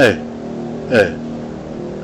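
A man's voice making the Thai hesitation sound "er" twice, about a second apart, each falling in pitch, over a steady background hum.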